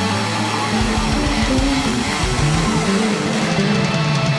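Live rock band playing an instrumental passage: electric guitars over bass and drums, with the low end and drums kicking in strongly just under a second in.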